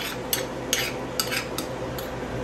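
Spoon scraping and tapping inside a ceramic mortar, knocking crushed cardamom out into a small steel saucepan: a string of short, irregular scrapes and clicks, about seven in two seconds.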